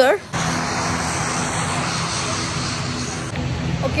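Steady aircraft engine noise, an even hiss over a low hum, beginning abruptly about a third of a second in.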